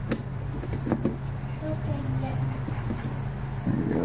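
A steady low hum, with a few light metallic clicks from the first second or so as the float bowl of a Tecumseh 5 hp carburetor is handled and worked loose.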